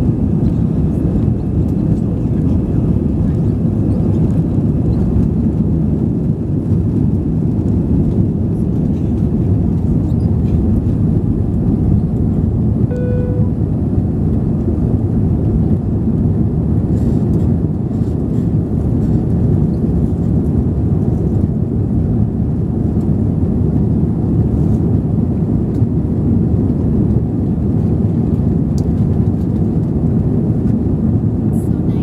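Steady, loud roar of an Airbus A320's engines at takeoff thrust, heard inside the passenger cabin as the airliner leaves the runway and climbs. A brief electronic beep sounds about halfway through.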